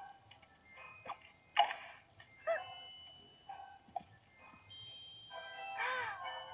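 Cartoon soundtrack playing from a screen's speaker: light music of held notes, broken by several short sharp comic sound effects and a warbling pitch glide about halfway through.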